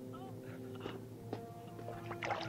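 Film soundtrack music holding sustained low notes, with a few faint short ticks over it.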